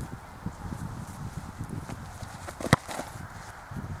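A football kicked on the half volley: one sharp thud of boot on ball about three-quarters of the way through, over a low rumble of wind on the microphone.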